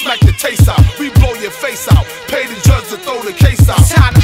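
Hip hop music: a loud beat of deep kick drums, several a second, with a rapped vocal over it.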